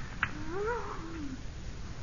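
A man's drawn-out moan of pain, rising then falling in pitch, about a second long, with a sharp click just before it. It is the dying cry of a man beaten in a fight, played by a radio actor.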